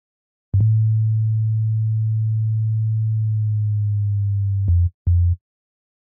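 Sine-wave bass synth from Logic Pro X playing on its own: one long, low note held for about four seconds, then two short notes. Each note starts with a slight click.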